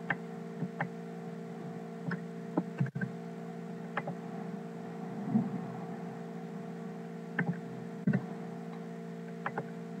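Steady electrical hum with several fixed pitches, the noise of a poor-quality microphone. About a dozen short, sharp clicks and taps from a computer mouse and keyboard are scattered across it.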